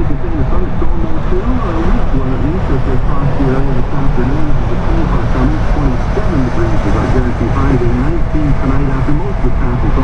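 Car cabin noise at highway speed, a steady low tyre and road rumble, with a radio announcer talking continuously over it.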